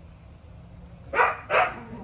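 A dog barking twice in quick succession, two short loud barks.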